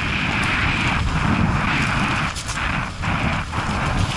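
Mountain bike tyres rolling fast over a rough gravel and rock trail, a continuous crunching hiss with rattles of the bike, under a heavy rumble of wind buffeting the helmet-mounted camera's microphone.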